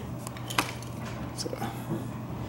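A couple of faint clicks from a billet motorcycle carburettor being handled and turned over in the hand, over a steady low hum.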